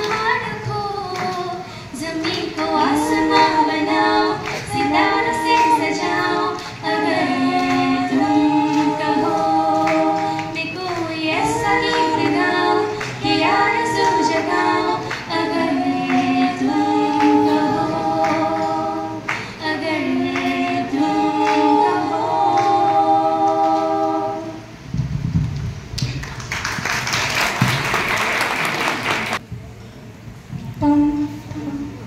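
A group of women singing a song in harmony into microphones, with no instruments heard. The song ends about 25 seconds in, and a few seconds of applause follow.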